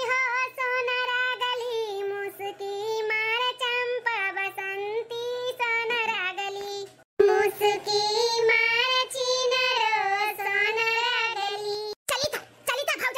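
A high-pitched voice singing a folk-style song in long held notes that waver up and down, breaking off briefly about seven seconds in before carrying on.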